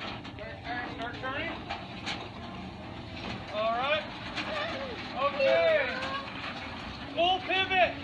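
Indistinct voices of several people calling out, in short bursts about halfway through and again near the end, over a steady low rumble.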